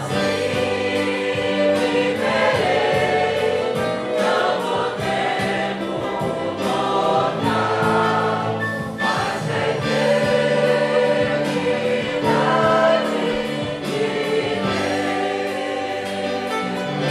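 A congregation singing a Portuguese hymn chorus together, accompanied by a small ensemble of violins and acoustic guitar.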